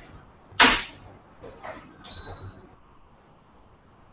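A metal utensil working in a pan as cream is stirred into chocolate sauce: a short loud rushing scrape about half a second in, fainter scrapes, then a clink with a brief high ring about two seconds in.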